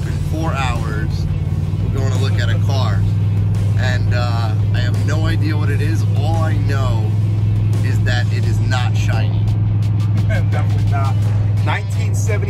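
Men talking over background music, with a steady low hum throughout, inside a moving car's cabin.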